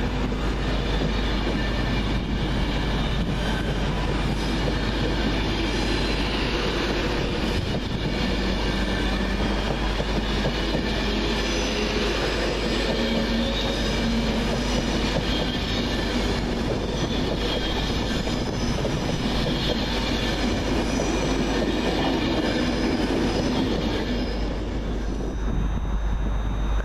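Class 390 Pendolino electric multiple unit pulling out and running past close by: a steady rumble of wheels and running gear with a few thin whining tones over it. It drops away near the end as the last coach clears.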